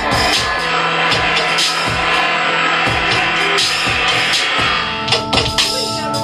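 Live noise music: several steady held electronic drones under a dense wash of harsh noise, cut by irregular drum hits.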